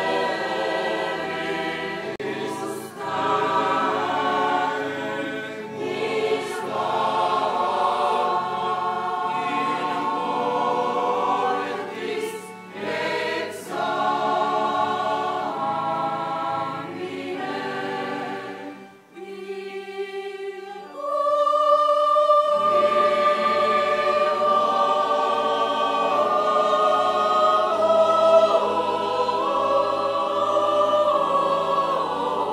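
Mixed choir of women's and men's voices singing together in parts. About two-thirds of the way through the singing thins to a brief lull, then comes back fuller and louder with long held notes.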